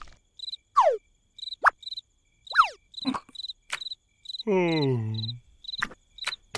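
Crickets chirping in an even repeating pattern as a night ambience bed. Cartoon sound effects sit over it: two quick falling whistle-like glides, a rising one, a few sharp clicks, and, over the last two seconds, a low groan about a second long whose pitch falls.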